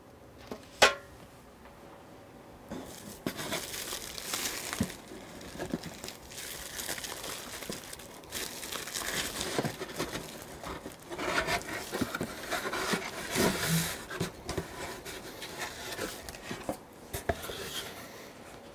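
Bubble-wrap and plastic packaging crinkling and rustling in uneven bursts as bubble-wrapped aluminium panels are handled in a cardboard box. There is one sharp knock about a second in.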